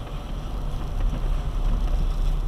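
Steady low rumble of a car driving slowly on a wet road, engine and tyre noise heard from inside the cabin.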